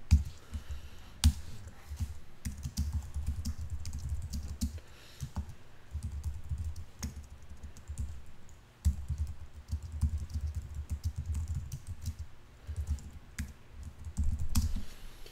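Typing on a computer keyboard in runs of quick keystrokes broken by short pauses, with a few louder single clicks near the start.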